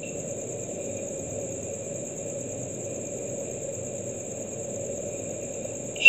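Steady background noise with a constant high-pitched whine.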